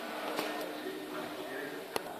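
Indistinct voices talking in the background over a steady low hum, with one sharp click just before the end.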